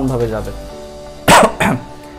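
A dog barking twice in quick succession, about a second and a half in, louder than the speech around it.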